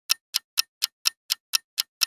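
Countdown-timer ticking sound effect: sharp, evenly spaced clock-like ticks, about four a second, marking the answer countdown.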